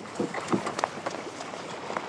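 Several short, dull knocks and thumps in the first second and one sharper click near the end, over a steady background hiss.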